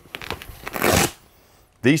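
Upholstered seat cushions being lifted and handled, a short rustling and scuffing of fabric that is loudest about a second in, then stops.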